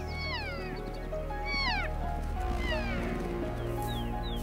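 Elk giving high mewing calls, four in a row a bit over a second apart, each falling in pitch. Background music with low sustained tones plays underneath.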